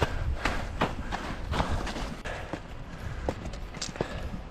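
Footsteps in ski boots and the plants of trekking poles of a person walking uphill: irregular crunches and taps, about one every half second, over a low rumble of wind on the microphone.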